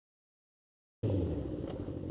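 Dead silence for about a second, then a motorcycle engine starts to be heard running steadily, mixed with low wind rumble on the camera microphone.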